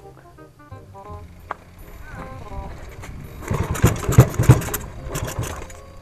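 Background music, with a 150cc drag-bike engine revving loudly for about two seconds from roughly three and a half seconds in.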